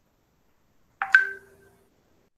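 A short electronic notification chime about a second in: two quick tones in a row that ring briefly and fade out in well under a second.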